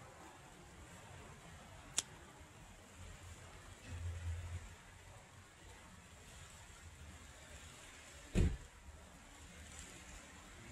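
Faint steady hiss with a single sharp click about two seconds in, a short low rumble around the middle, and a dull thump near the end, which is the loudest sound.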